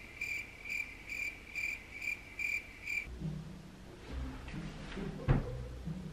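Cricket chirping sound effect: an evenly spaced high chirp, about two a second, that stops about three seconds in. Low background music then begins, with a single sharp thump a couple of seconds later.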